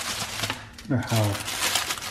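Clear plastic wrapping crinkling as hands handle a baked stromboli inside it. A short voiced sound comes about a second in.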